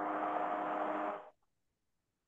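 A short burst of steady hiss-like noise with a faint hum in it, picked up through a video-call participant's microphone. It lasts about a second and a half and cuts off suddenly.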